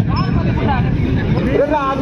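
Several voices of players and onlookers calling out and talking at once across an open-air volleyball court, over a steady low rumble.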